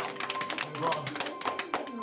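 Scattered, irregular hand claps from a few people, mixed with voices.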